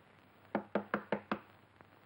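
Five quick, sharp knocks on a wooden door, about five a second, with a faint single tap shortly after.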